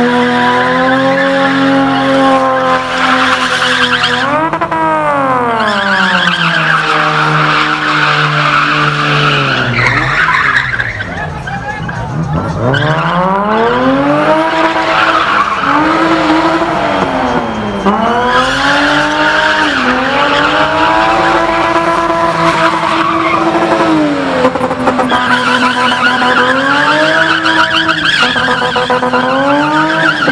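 BMW E30 engine held at high revs while the car spins, the rear tyres screeching continuously. The revs dip and climb again several times, falling steeply to a low point and going quieter about a third of the way through before building back up.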